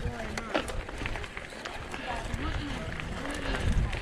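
Mountain bike rolling along a gravel track, with a low wind rumble on the helmet camera's microphone, a few sharp rattles, and people's voices talking around it.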